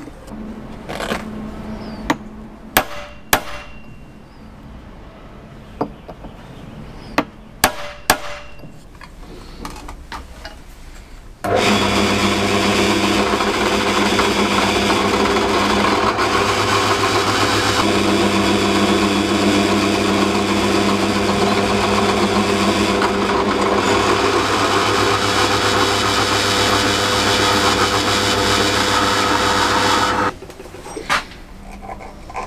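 A few sharp clicks and knocks of metal parts being handled, then a pillar drill press switched on about a third of the way in, its motor running steadily with a low hum as the bit is brought down onto a piece of steel steam pipe held upright in a drill vise.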